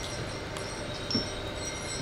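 Steady low room noise with a faint hiss in a pause between spoken sentences, and a brief faint sound a little over a second in.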